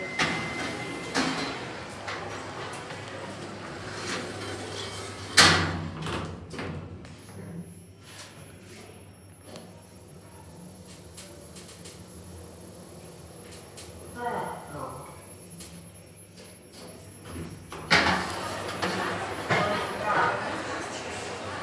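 Passenger lift doors sliding shut with a sharp thud about five seconds in, then the steady low hum of the lift car travelling. Near the end the doors slide open with a loud rush of sound.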